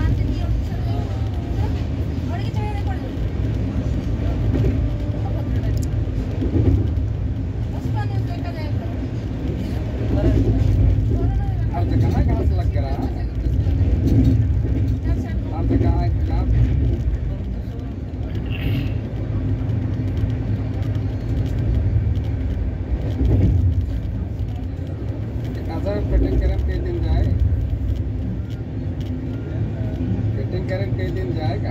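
Steady low rumble of a moving passenger train heard from inside the coach, with people talking in the background.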